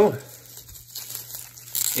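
Plastic bubble wrap crinkling and rustling as it is pulled off a trading card by hand, louder near the end.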